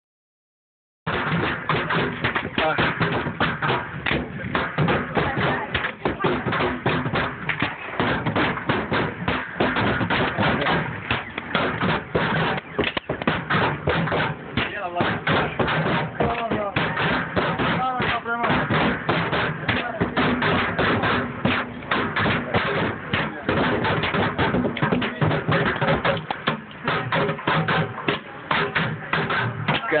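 Street drumming on upturned plastic bins and buckets, played with drumsticks, mallets and bare hands: a dense, fast, continuous stream of hollow hits that starts about a second in.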